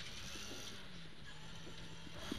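Rally Ford Escort RS2000 heard from inside its cabin: the engine and drivetrain running at a steady, moderate level.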